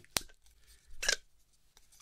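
A plastic groan tube toy being tipped and shaken: a sharp click just after the start, then a short raspy rush about a second in.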